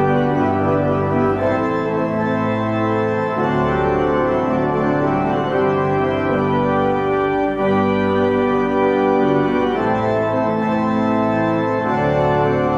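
Organ postlude: slow, sustained chords held for a second or two each before moving to the next.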